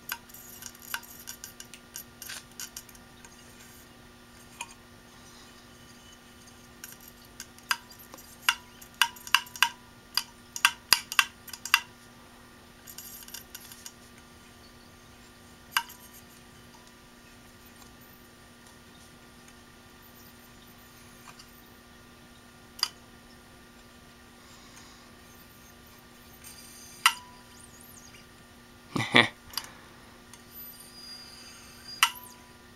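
Sharp metallic clicks and taps from fingers working the exposed actuator arm and platter of an opened Maxtor hard drive: scattered single clicks, a quick run of them about a third of the way through, and a louder knock near the end.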